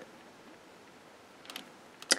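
Near silence: room tone, with one faint short tick about one and a half seconds in.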